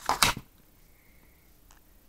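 A paper page of a picture book being turned by hand: a brief rustle and flap of paper in the first half-second.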